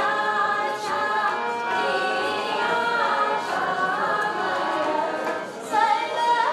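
A group of voices singing a slow melody together, holding long notes, with a brief dip and a new phrase starting near the end.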